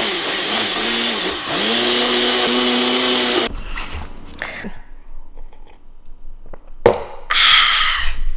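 A Ninja single-serve blender runs steadily, blending a smoothie with frozen fruit. Its motor pitch dips briefly about a second and a half in and recovers, and the motor cuts off about three and a half seconds in. Quieter handling clicks follow, then a short, louder burst of noise near the end.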